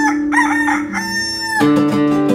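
A rooster crowing over acoustic guitar playing: a few short notes, then one long held note that ends just before the guitar strumming resumes.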